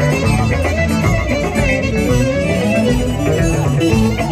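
Greek traditional dimotiko dance music from a live band, loud and steady with a regular beat under the melody.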